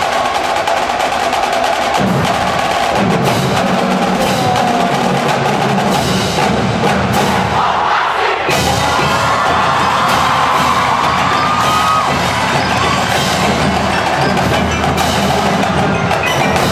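Marching band playing, led by its percussion: drumline strokes throughout over pit mallet percussion, with a held higher note that rises slightly through the middle.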